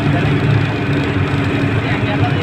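Bus engine running with a steady low drone and road noise as the bus drives along, heard from inside the passenger cabin.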